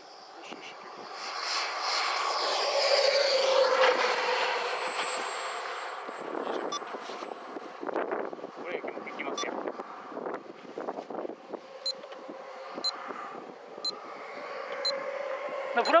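Radio-controlled MiG-29 model jet running: a thin high-pitched jet whine with a rushing noise under it. It grows loudest a few seconds in and falls in pitch as the model goes by, then holds a steady pitch and rises again near the end.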